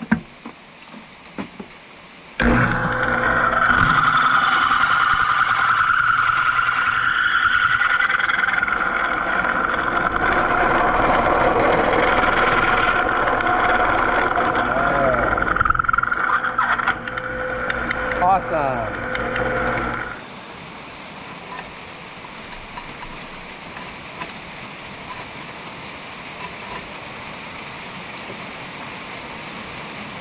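Drill press running with a drill bit cutting hard steel in a plow beam: a steady grinding squeal over the motor's hum, reaming out a leftover ridge in the hole. It starts about two seconds in, wavers near the end and cuts off suddenly after some eighteen seconds, leaving a steady hiss.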